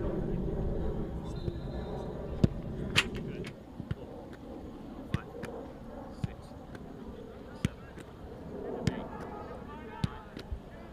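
A football being struck in a passing drill on a grass pitch: a string of sharp kicks roughly a second or so apart. Voices carry under the first few seconds.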